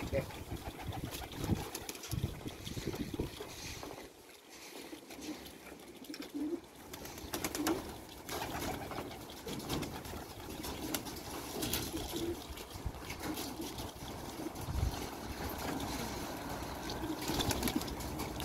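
Domestic pigeons cooing in short low calls, with occasional brief flutters of wings as birds take off and land.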